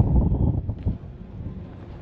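Wind buffeting the microphone, a gusty low rumble strongest in the first second that then eases.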